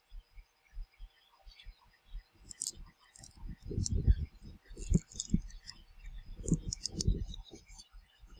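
Hands fastening a leather watch strap and handling packaging close to the microphone: soft rustles, bumps and light clicks, busier and louder from about halfway through. A faint steady whir runs underneath.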